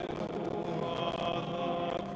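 A hymn being sung, with long held notes at a steady level.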